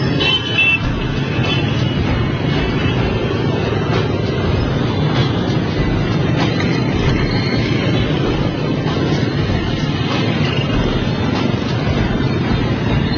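Dense motorbike and scooter traffic: many small engines running together in a steady din, with a few short high beeps about half a second in.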